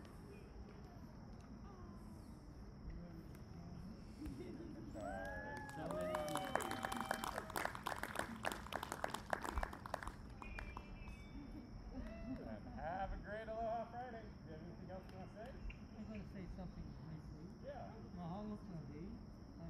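A small group clapping for about four seconds midway through, with voices calling out over and after the clapping, heard from a distance.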